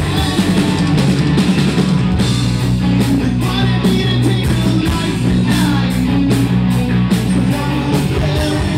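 Live rock band playing: electric guitars, bass guitar and a drum kit, loud and continuous.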